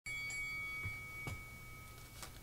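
A single bell-like electronic chime, struck once and fading out over about two seconds: the game-start sound of an online Go board. Two faint mouse clicks come in as it fades.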